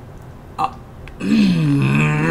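A man's long, low burp, starting a little over a second in, its pitch sagging as it goes.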